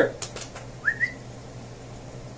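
A short, rising call whistle to summon a dog, about a second in, preceded by a couple of faint clicks.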